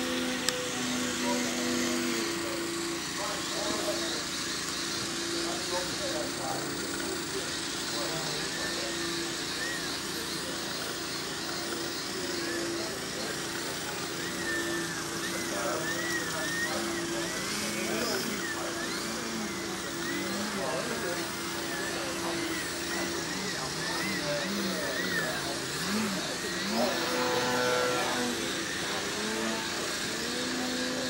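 Brushless electric motor and 16x8 propeller of a 60-inch Edge 540T EXP aerobatic model plane, its whine rising and falling as the throttle is worked. Voices in the background and a steady low hum run underneath.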